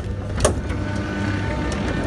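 Metro car doors at a station, a sharp clunk about half a second in, over the low rumble of the standing train. Faint steady high tones come in after the clunk.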